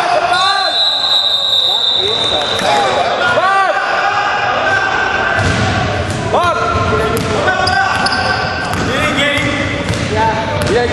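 Basketball being dribbled on a hardwood gym floor, with a run of sharp bounces from about halfway through. Short rising-and-falling squeaks and players' voices carry over it, echoing in the hall.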